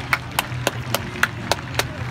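One person clapping their hands close by in a steady rhythm, about three to four claps a second, cheering a successful conversion kick.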